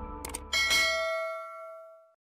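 Subscribe-animation sound effect: a quick double mouse click, then a bright bell ding that rings on and fades away over about a second and a half. Soft background music dies out underneath during the first second.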